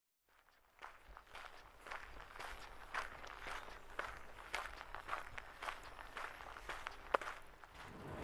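A series of soft, irregular taps, about two a second, fading in from silence, with one sharper, louder tap near the end.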